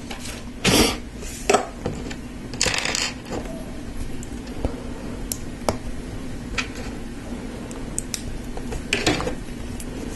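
Small plastic LEGO pieces clicking and rattling as they are handled and pressed together by hand, a scatter of sharp light clicks with a few brief rustling bursts from fingers near the start.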